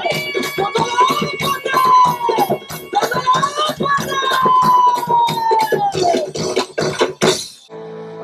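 Live Tamil folk music for a karagattam pot dance: rapid, steady drumming under a long, sliding melody line that drops in pitch at the end of each phrase. The music stops abruptly about seven and a half seconds in.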